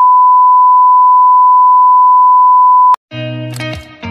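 Television colour-bars test tone: a single steady 1 kHz beep lasting about three seconds that cuts off suddenly, after which music comes in.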